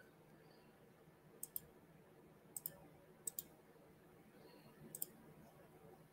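Four pairs of faint, short clicks, irregularly spaced, over quiet room tone: computer mouse clicks.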